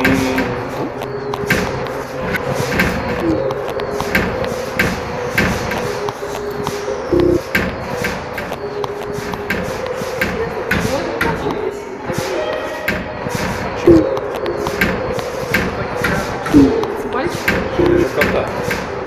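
Ambient sound-design piece: a held drone under scattered sharp clicks and knocks, about two a second at irregular spacing, with a few short gliding voice-like fragments.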